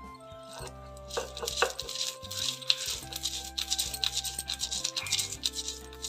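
Light background music with a melody, over the rough, uneven scraping of a hand grinding stone working lentils on a flat stone slab (sil-batta).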